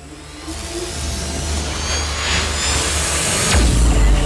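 Cinematic logo-intro sound design: a low drone under a swelling whoosh that builds steadily in loudness, with shimmering high tones, ending in a deep boom about three and a half seconds in.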